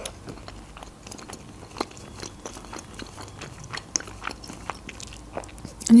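Close-miked chewing of a bite of homemade pizza: a run of small, irregular clicks of mouth and crust.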